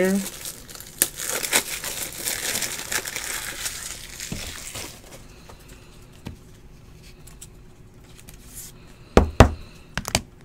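A trading-card pack wrapper being torn open and crinkled for about five seconds, followed by quieter rustling of the cards being handled. Two sharp, loud knocks come close together near the end.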